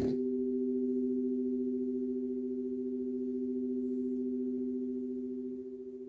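Crystal singing bowls ringing: two steady, pure low notes held together, fading slightly near the end.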